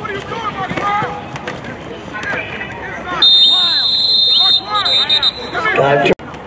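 Referee's whistle: one long blast of about a second and a half past the middle, then a few short blasts, over spectators' shouting voices.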